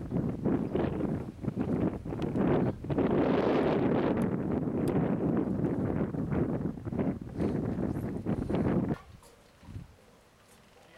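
Wind buffeting the microphone in irregular gusts, then dropping off sharply about nine seconds in.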